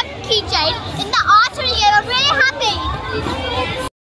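A young girl's voice, talking or exclaiming close to the microphone in a lively, rising-and-falling pitch over a low background rumble; it cuts off suddenly near the end.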